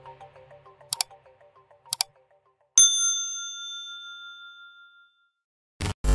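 Subscribe-animation sound effects: two short clicks about a second apart, then a single bright bell ding that rings out and fades over about two seconds, while the tail of the background music dies away. A loud burst of glitch noise comes in just before the end.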